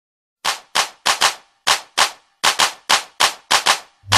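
About a dozen sharp, cracking hits, some in quick pairs, separated by silence, opening a hip-hop track.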